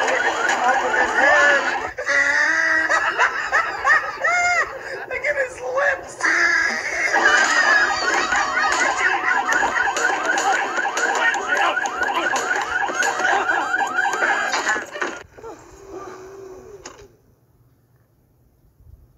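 Several cartoon voices shrieking and yelling together, without words, breaking off sharply about three-quarters of the way through, followed by a fainter sound that dies away shortly before the end.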